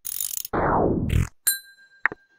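Sound effects from an online function-machine app processing an input: a short noisy mechanical whirr, then about a second and a half in a click and a bright ding that rings on as the answer comes out.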